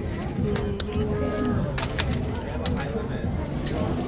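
Casino chips clicking against one another as they are picked up and stacked by hand, a series of short sharp clicks, over a background of voices.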